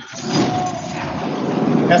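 A loud, steady rushing noise with no clear pitch, over a video-call audio line.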